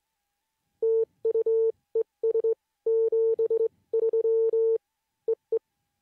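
Morse code sidetone: a steady beep keyed on and off in dots and dashes, sent by hand on a Begali Sculpture Swing sideswiper. It ends with two short dits.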